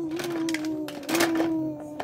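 A young child humming one steady, held note that breaks off briefly twice, over light clicks of plastic toy tools knocking about in a plastic toolbox.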